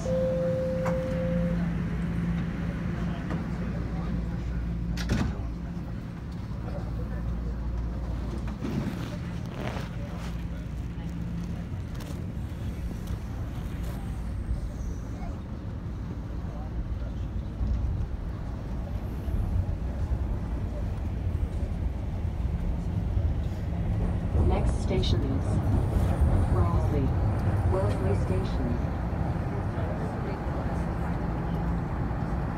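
TTC subway car running between stations: a steady low rumble and rattle from the train, with a few sharp clicks. The last note of the falling door chime sounds in the first second and a half.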